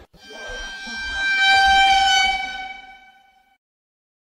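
A single long horn-like blast: one steady held tone that swells up over the first second or so and fades away by about three and a half seconds.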